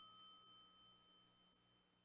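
Near silence, with faint steady high ringing tones held under it.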